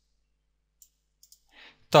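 Near silence broken by a few faint clicks at the computer about a second in, then a soft breath, and a man's voice starts at the very end.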